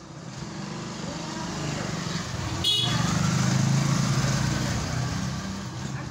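A motor vehicle's engine passing close by, growing louder to a peak about three to four seconds in and then fading, with a short high-pitched beep a little before the peak.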